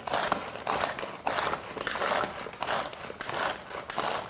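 Chef'n VeggiChop pull-cord hand chopper being pulled again and again, its blades spinning through onions in the plastic bowl: a rapid series of short whirring, chopping strokes.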